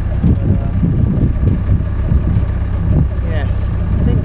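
Narrowboat's diesel engine running steadily under way, a constant low rumble.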